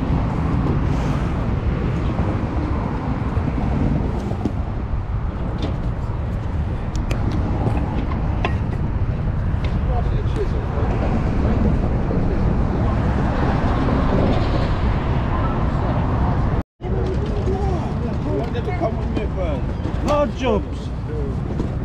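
Wind buffeting the microphone outdoors as a steady low rumble, with a few light clicks as a cardboard box and the appliance packed in it are handled. A short dropout comes near the end, and voices talking follow it.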